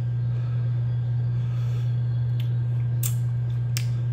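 A steady low hum, with a few faint short clicks in the second half.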